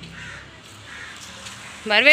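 Quiet outdoor background, then one loud drawn-out crow caw that starts just before the end.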